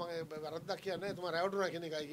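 Speech only: a man talking steadily in Sinhala into the microphones.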